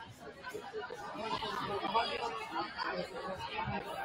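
Overlapping chatter of many voices in a gymnasium, no single voice standing out, growing louder about a second in.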